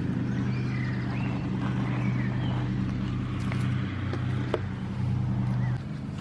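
A steady low droning hum like a running engine, which drops away suddenly near the end, with faint bird chirps and a few light clicks over it.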